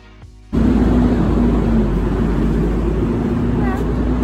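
Background music cut off about half a second in by loud city street noise, a steady low rumble of traffic. A voice starts faintly near the end.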